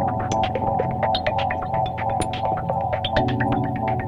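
Live electronic house music from synthesizers: held chords over a bass line, with quick, ticking percussion throughout. A new bass figure comes in about three seconds in.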